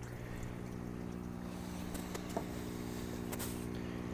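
Steady electric hum of the hydroponic system's pumps, which run around the clock, with a light tap a little past halfway.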